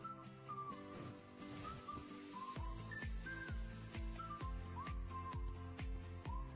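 Background music: a high, whistle-like melody of held notes that slide up into pitch, joined about two and a half seconds in by a steady kick-drum beat and bass.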